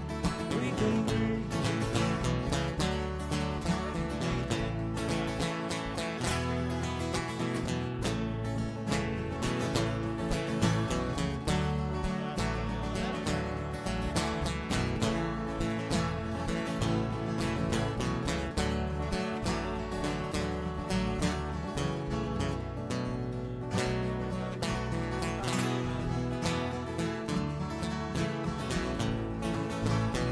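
Live band playing an instrumental stretch of an acoustic song: strummed acoustic guitars over steady low notes, with no singing.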